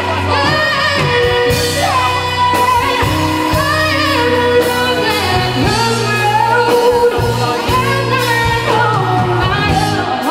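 A woman singing a pop song into a microphone, with band accompaniment of drums and bass underneath.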